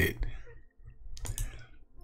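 A short pause in a man's speech, with a few faint clicks about a second in.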